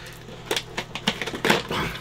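Cardboard box flap being worked open by its tuck tabs: several sharp clicks and scrapes of paperboard in the second half.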